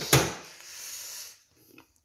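A rice cooker lid shut with one sharp click, followed by about a second of soft hissing noise that fades away.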